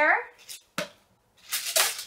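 Hands handling hair products and packing items: a small click, then a sharp tap about a second in, then a short rustling hiss near the end.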